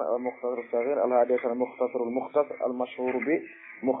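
Speech only: a man talking steadily in a lecture.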